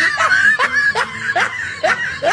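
A person laughing in a run of short bursts, about two to three a second, each rising in pitch.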